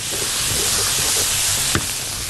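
Diced tomatoes, peppers, garlic and parsley sizzling in a hot frying pan as they are stirred with a spatula: a steady hiss, with a short click near the end.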